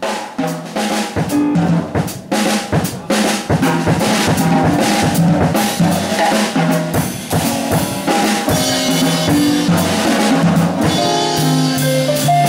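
Upbeat band music driven by a drum kit, with busy snare and bass-drum hits over a bass line and held chords.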